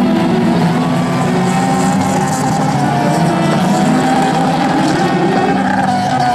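Background guitar music mixed with the engines of a pack of racing cars on a dirt track. The music gives way to the engines, which rev up and down in the second half.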